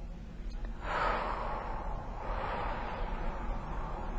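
A person drawing a long, deep breath in and letting it out, starting sharply about a second in, as the client comes out of a hypnotic trance.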